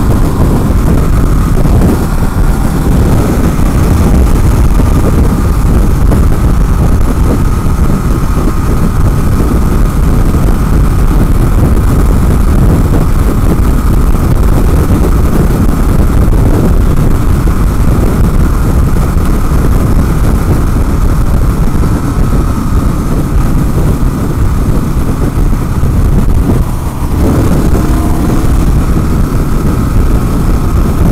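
Loud, steady wind buffeting on the microphone, with the single-cylinder engine of a 2016 KLR650 running at freeway speed underneath, a faint steady engine tone; the noise dips briefly near the end.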